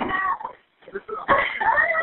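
A caller's distressed, high-pitched voice on a 911 phone recording, heard through a narrow telephone line, breaking off briefly about halfway through.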